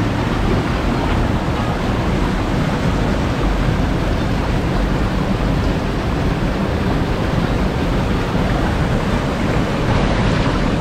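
Steady rushing of water cascading over rocks in a rocky river gorge, an even noise with no breaks.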